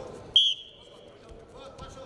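Referee's whistle, one short blast about a third of a second in that fades over about half a second, signalling the start of wrestling.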